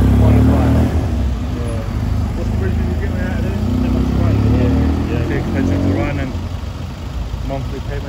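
Classic Fiat 500's air-cooled two-cylinder engine running loudly as the car pulls away, fading about a second in. Then steady street traffic noise with passers-by's voices, and another car's engine passing near the end.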